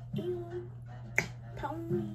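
A single sharp snap a little past halfway, over soft background guitar music.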